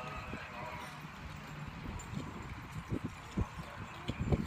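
A show-jumping horse's hoofbeats, dull thuds that grow heavier in the second half, with a few strong ones about three seconds in.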